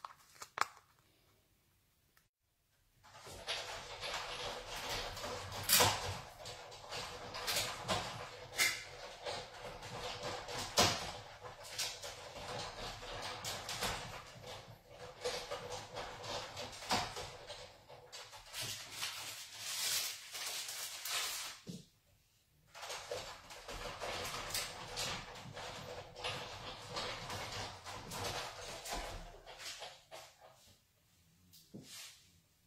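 Sizzix Big Shot die-cutting machine being hand-cranked, with steady grinding and frequent clicks as the cutting plates pass through the rollers; it starts a few seconds in, stops briefly about two-thirds through and runs again, a second pass needed because the layered card piece is thick.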